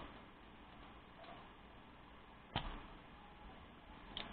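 Spring-loaded desoldering hand pump fired once, about two and a half seconds in: a single sharp snap as the button releases the plunger to suck molten solder out of a through-hole joint.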